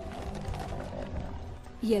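A horse giving a rough, low call for about the first second, over a low rumble of movement.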